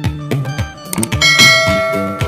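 A bell 'ding' sound effect rings out about a second in and fades away, over background music with a plucked-string beat. It is the notification-bell cue of an animated subscribe button.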